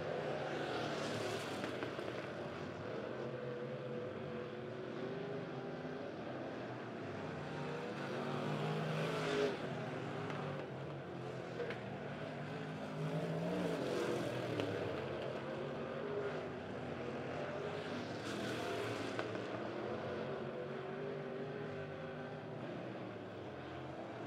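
Engines of stock cars racing around a dirt oval track, a steady drone. Several times the note swells and fades as cars pass by.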